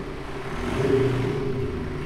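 BMW 420d diesel running with its active sound booster playing a synthetic exhaust note on the 'Urban' sound profile. The note is steady and swells in loudness about half a second in.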